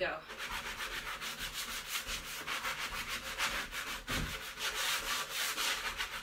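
Hand sanding block rubbed back and forth over a painted wooden door in quick, even strokes, wearing through the fresh white paint to distress it.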